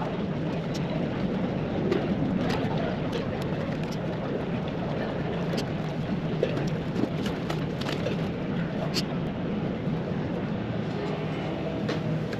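Airport concourse ambience: a steady low hum with indistinct voices in the background and scattered small clicks and knocks.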